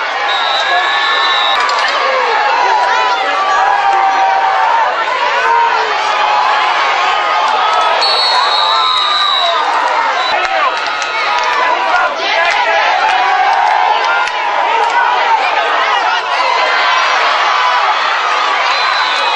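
Football crowd in the stands: many voices talking and cheering at once, with two short, high, steady whistle-like tones, one about half a second in and one about eight seconds in.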